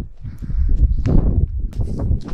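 Strong wind buffeting the microphone with a heavy low rumble, over uneven footsteps and knocks as people walk over farm ground. The rumble swells louder about half a second in.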